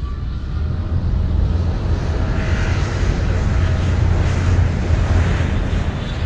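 Jet aircraft engine noise: a steady rumble with a rushing hiss that builds slightly through the middle and begins to ease near the end.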